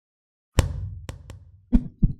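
Logo intro sound effect: a sharp percussive hit about half a second in with a low rumble trailing off, two quick clicks, then another hit near the end.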